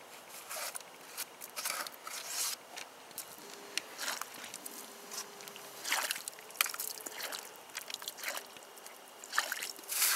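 Wet mud and slush squelching and scraping as hands rub it into a shotgun's rail and magazine tubes, in irregular short strokes.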